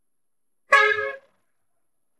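A single short vehicle horn honk, lasting about half a second, about a second in.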